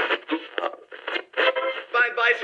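Speech coming from an old wooden valve radio's speaker, thin and narrow-sounding like an AM broadcast, as its tuning knob is turned.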